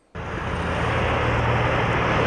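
A vehicle driving past on a highway: a steady rush of engine and tyre noise with a low hum, which cuts in abruptly just after the start.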